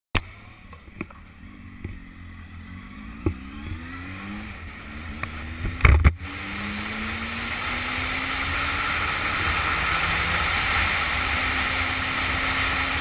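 Motorcycle engine revving up in several rising sweeps, with a few sharp knocks early on. A loud thump about six seconds in, then steady wind and road rush building with the engine as the bike rides at speed.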